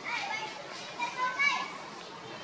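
Young macaque crying: several short, high-pitched calls, the loudest about a second and a half in.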